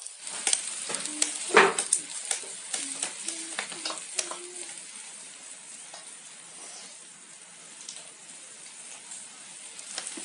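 Food sizzling in oil on an electric griddle: a steady hiss with scattered crackles and pops, busiest in the first couple of seconds and settling down after about five.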